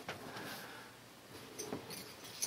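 Faint rustling and handling noises of hands rummaging about, with a sharp click right at the start and another light click near the end.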